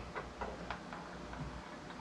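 A few faint, irregularly spaced light clicks and taps of objects being handled.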